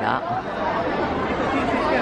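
Chatter of several people talking at once, no one voice standing out.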